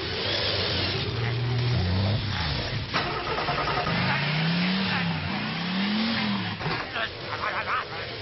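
Cartoon sound effect of an engine revving up and down about four times over a loud, steady hiss of noise.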